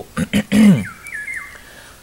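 Two quick snips of hand scissors cutting parsley, then a brief voiced sound from the man. After that, a small bird's faint chirp falls in pitch in the background.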